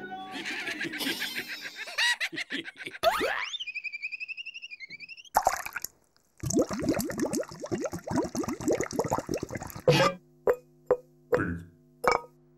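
Cartoon sound effects of liquid plopping and bubbling in quick runs, broken by a rising glide and a short warbling whistle-like tone. A few separate plops come near the end.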